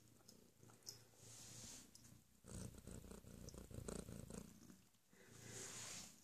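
Torbie domestic cat purring faintly while having her tummy tickled. The purr comes in stretches of a second or two, with short breaks between breaths.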